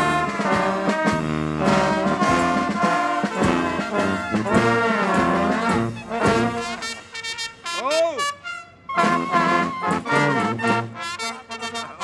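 Carnival street brass band of trombones, trumpets and clarinet playing a lively tune, with sliding notes. About seven seconds in the band thins out and a single note slides up and down, then the full band comes back in.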